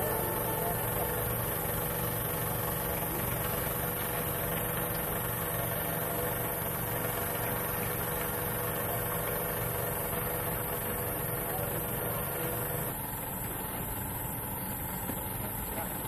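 An engine idling steadily, a continuous hum that drops slightly in level and changes tone about thirteen seconds in.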